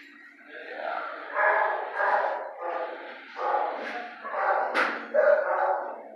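Dogs barking in a shelter kennel: a string of about eight barks, with a short sharp click near the end.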